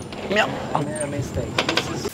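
Clicking and ratcheting from a camera being handled, with a cluster of sharp clicks about one and a half seconds in.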